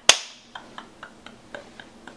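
A single sharp hand clap, with a short room echo, followed by faint soft ticks about four a second.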